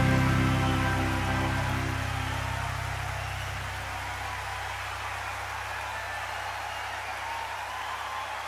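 A live band's held final chord, electric guitar among it, ringing out and fading away over about four seconds, leaving a low hum and a faint even hiss.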